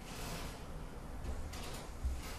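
Faint background noise with a low hum and no clear events: room tone from the narrator's microphone.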